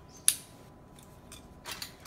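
A single sharp plastic click about a quarter of a second in, then faint clicks and a brief rustle near the end, from small plastic parts of a toy doll stroller being handled.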